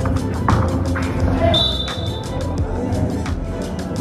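Music with a steady beat, about four beats a second. About one and a half seconds in there is a brief high, steady tone lasting under a second.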